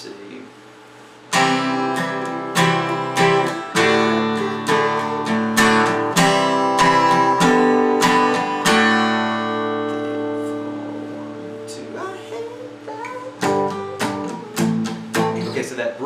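Steel-string acoustic guitar strummed in a strong rhythm, playing through the chords of a song's bridge, which begin about a second in. About halfway through, one chord is left ringing and fades. Strumming picks up again near the end.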